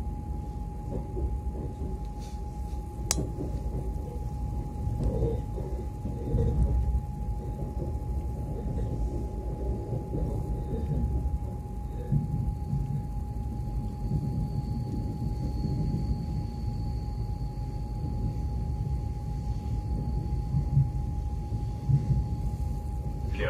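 Cabin sound of a Moscow Central Circle electric train (Lastochka) running along the track: a steady low rumble with a constant whine, and a fainter high whine joining about two-thirds of the way through. One sharp click about three seconds in.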